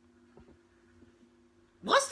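Near silence with a faint steady hum through a pause. Just before the end, a woman's voice breaks in loud and high, starting a drawn-out cry.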